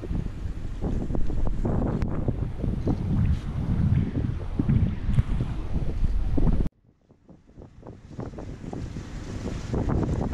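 Wind buffeting the camera microphone on the open deck of a moving river cruise ship: a loud, gusty low rumble. About two-thirds of the way through the sound cuts off abruptly, then the wind noise builds back up.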